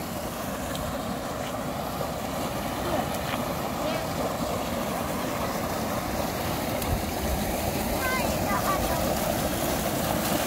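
Steady rush of water pouring from a large inflow pipe into a concrete fish raceway, growing louder toward the end.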